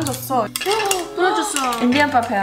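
Light clinks of broken dalgona candy pieces against a ceramic plate, under young women's voices chanting and talking.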